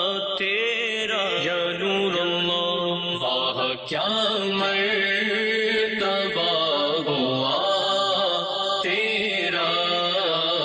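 A man singing an Urdu naat, a devotional poem in praise of the Prophet, in long held notes with melodic ornaments and no percussion.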